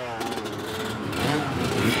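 A motorcycle engine running, with a rising rev right at the start, under a mix of people's voices; it all grows louder about a second and a half in.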